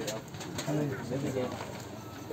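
People talking around a busy food stall, a man's voice in short phrases heard from about halfway through over general crowd chatter.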